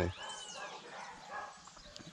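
A dog whimpering faintly: one short high whine near the start.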